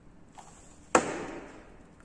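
A single sharp knock about a second in that dies away over about half a second, with a faint click just before it.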